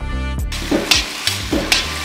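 Potato-and-vegetable samosa filling sizzling in a black iron kadai as a steel ladle stirs it through the hot oil. Background music with a beat plays for the first half second.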